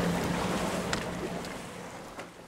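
Wind and water noise over open water, fading out steadily, with a single sharp click about a second in.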